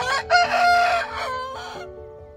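Broiler rooster crowing once: a short opening note, then one long held call that drops in pitch and ends shortly before two seconds in.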